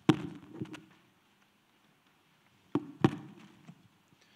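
A few sharp knocks and clunks of objects being handled and picked up, close to a handheld microphone: two near the start, two more about three seconds in, with near silence between.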